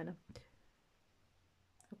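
A woman's word trailing off, a single short click, then near silence.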